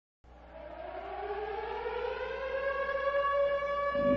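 A siren-like tone winding up: it fades in, glides upward in pitch while growing louder, then holds one steady pitch near the end.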